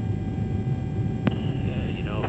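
Steady low rumble of a tanker aircraft in flight during aerial refuelling, with a faint steady tone over it and a single sharp click a little past halfway.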